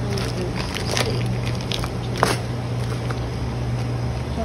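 Plastic-wrapped grocery packets rustling and knocking as they are handled in a wire shopping cart, with a sharp click about two seconds in, over a steady low hum.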